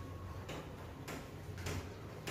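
Whiteboard duster wiping the board in short back-and-forth rubbing strokes, three strokes about half a second apart.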